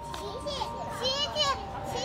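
Small children's high-pitched voices chattering as they play together, loudest about a second in.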